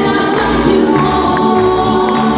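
Live rembetiko song: two women's voices singing together over plucked bouzoukis, guitars and double bass.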